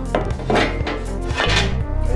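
A street sign knocking and scraping against a tiled wall a few times as it is set in place, over background music.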